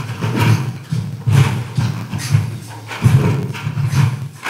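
Live rhythmic percussion performance in a large room: heavy thumps and sharp hits in an uneven beat, about two to three a second.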